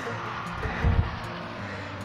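Background music with steady held tones, and a couple of soft low thumps about halfway through.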